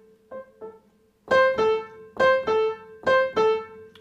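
Piano played with the right hand: a falling two-note figure struck once softly, then repeated three times much louder.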